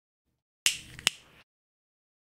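A small object dropped near the microphone, landing with two sharp knocks about half a second apart.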